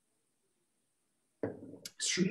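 Near silence on a video call, broken about one and a half seconds in by a brief, sudden low noise just before speech resumes.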